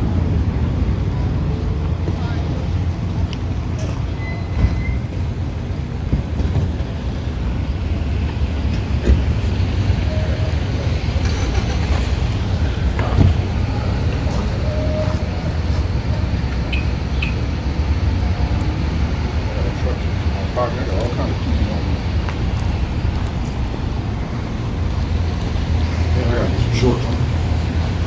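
Steady low rumble of road traffic outdoors, with a few light knocks.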